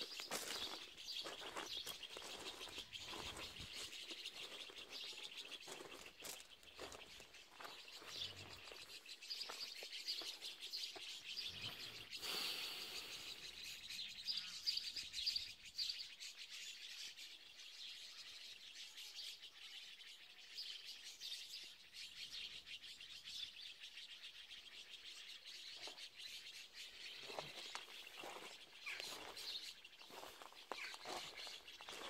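Many small birds chirping in a continuous, faint, busy chatter, fuller in the first half and thinning out later.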